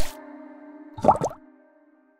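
Background music ending: a final hit at the start fades into a held chord, with a short, bubbly sound effect that bends in pitch about a second in, and the sound cuts off at about one and a half seconds.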